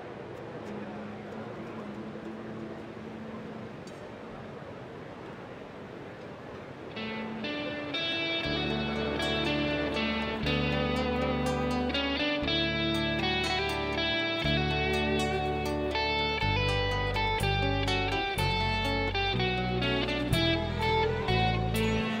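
Low, even hall noise for the first few seconds, then an orchestra with strings begins playing about seven seconds in, growing fuller and louder with deep bass notes joining a second or so later.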